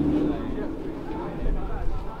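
Indistinct voices of people talking in a crowd, with a low rumble underneath.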